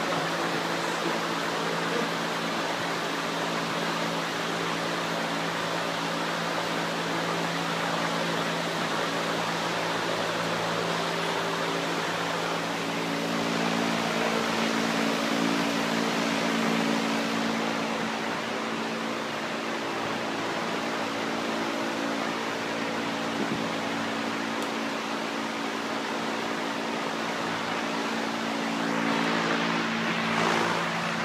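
Steady hum and hiss of shipboard ventilation and machinery, with several steady low tones under an even rush of air that swells slightly midway.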